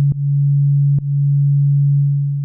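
Korg Volca Drum playing one low, steady sine-like tone. It is retriggered twice, with a click about a tenth of a second in and another at about one second, and each time the amp envelope restarts, so the level drops and swells back up.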